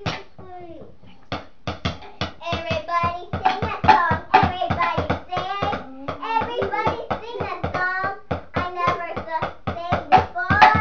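A child singing over rapid percussive hits, roughly five a second, which start about a second in and go on steadily.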